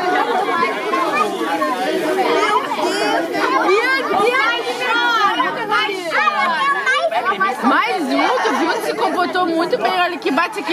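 Several people talking at once: overlapping chatter of a small group of voices, continuous with no break.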